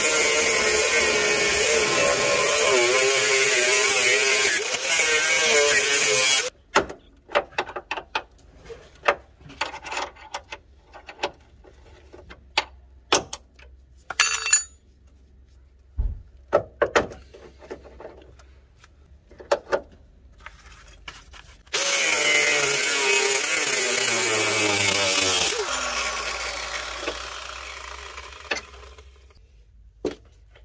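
Angle grinder with a thin cutting disc cutting through the head of a rusted lower-arm bolt that has seized in its bush sleeve, running under load with its pitch wavering. The cut stops about six seconds in, giving way to scattered metallic knocks and clicks. The grinder then runs again for a few seconds and winds down as the disc coasts to a stop.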